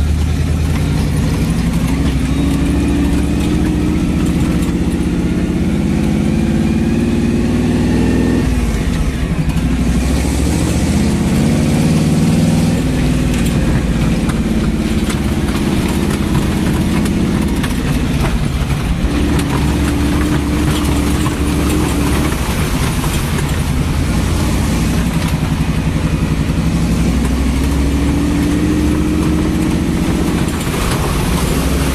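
Chevy 350 V8 in a 1979 Jeep CJ-5 pulling the Jeep along a wet dirt track, heard from inside the cab. The engine note climbs as it accelerates, drops sharply about eight seconds in and again near nineteen seconds, then climbs again near the end.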